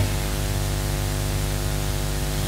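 Steady electrical hum with hiss from a sound system, with no change over its length.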